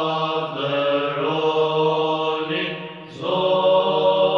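Orthodox church chant: voices singing a slow melody over a steady, low held drone note, pausing briefly about three seconds in before going on.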